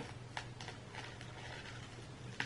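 A wet sheet face mask being peeled off the skin: faint, soft sticky clicks and a light rustle, over a low steady hum.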